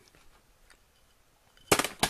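Near quiet, then a sudden loud, sharp burst of noise near the end.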